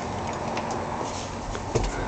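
Steady background room noise with a few faint clicks and a short low thump near the end.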